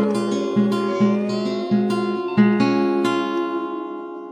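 Closing bars of a song on strummed acoustic guitar over low bass notes, ending on a last chord about two and a half seconds in that rings and fades away.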